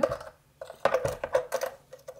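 A quick run of small plastic clicks and knocks as a soldering iron is pushed into its plastic holder stand on a Parkside soldering station. The taps come in a cluster about half a second in and last about a second.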